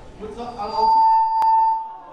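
Public-address microphone feedback: a steady single-pitched whistle that swells about half a second in and holds for over a second, with a sharp click in the middle of it.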